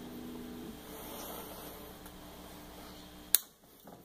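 Clean electric guitar notes ringing out and fading through a Gorilla GG110 solid-state combo amp, then a single sharp click a little over three seconds in, after which the amp's background hum drops away.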